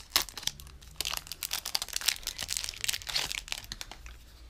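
A thin plastic wrapper crinkling as it is handled and pulled off a small item, a dense run of irregular crackles.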